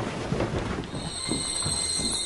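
A magical shimmer sound effect: a high, steady ringing tone comes in about a second in, over a rustle of movement.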